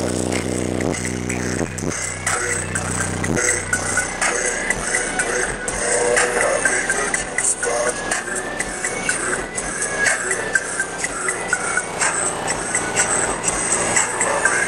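Loud bass-heavy hip-hop played through two custom 12-inch Sundown Audio ZV3 subwoofers on a Sundown SAZ-2500 amplifier wired to half an ohm. Steady deep bass notes carry the first few seconds, then the sound turns into a dense, noisy wash.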